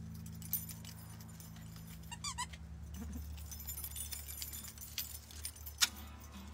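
The last chord of an acoustic guitar and double bass tune dying away, followed by small knocks and handling noises from the instruments. A brief high wavering trill sounds about two seconds in, and a sharp click comes near the end.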